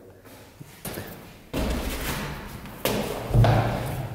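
A few dull thuds and knocks, each followed by a stretch of rough noise.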